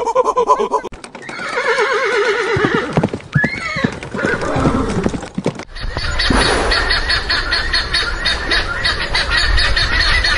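A monkey calling with wavering, whinny-like cries that bend up and down in pitch. Then, from about six seconds in, a hippopotamus cropping grass: a rapid, even tearing over a low rumble.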